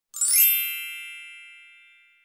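Sparkle chime sound effect: a quick rising shimmer of bright bell-like tones that settles into a ringing chord and fades away over about two seconds.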